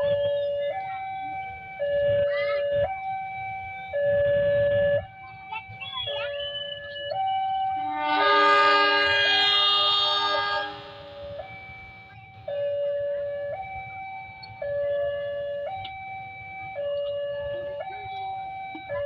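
Railway level-crossing warning alarm sounding a repeating two-tone signal, stepping between a lower and a higher note about once a second. About eight seconds in, a loud, steady train horn blows for about three seconds over it as the train prepares to leave the station.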